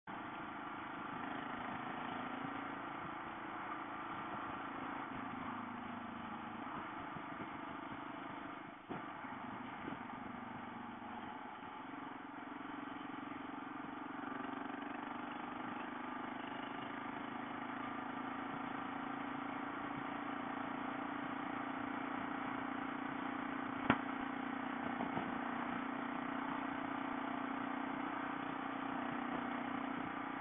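Motorcycle engine running at a steady cruising speed under wind and road noise, heard from the bike itself. One sharp click sounds late on.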